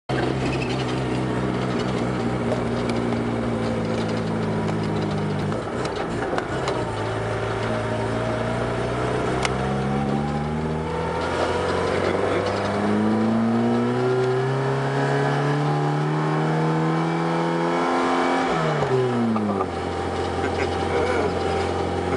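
Car engine heard from inside the cabin, pulling uphill. The revs climb and drop back at each gear change, about five and ten seconds in, then fall away steeply near the end and settle to a steady lower note.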